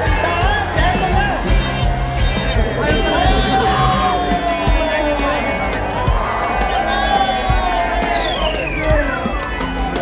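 A large crowd chattering and cheering over loud amplified music with a steady low bass. Near the end a long sweep falls in pitch from very high to low over about three seconds.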